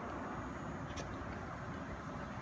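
Steady low background rumble with a single light click about a second in as a trading card is handled and picked up off a tiled floor.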